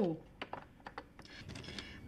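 A scatter of light clicks and taps, about half a dozen, irregularly spaced: small makeup cases and products being handled while the eye shadow is picked out.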